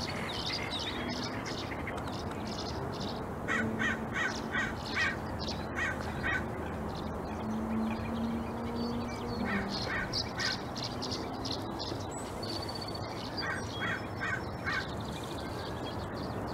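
Birds calling: short, harsh calls repeated in quick runs of four to six, coming several times, over a low steady hum and background hiss.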